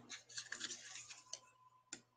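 Faint handling noise: small clicks and light rustling, with two sharper clicks in the second half.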